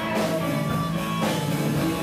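Live band playing rock music, an instrumental stretch with a steady beat of about two strokes a second and no singing.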